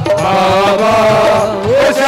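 Live Hindi devotional bhajan music: a long, held sung note that wavers and dips in pitch about one and a half seconds in, over steady accompaniment.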